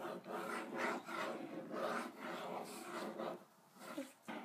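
A crayon scribbled back and forth on paper lying on a high-chair tray: a quick, rhythmic scratching of two or three strokes a second that stops about three seconds in.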